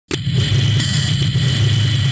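Yamaha Lander 250's single-cylinder engine running steadily, a loud, even low rumble.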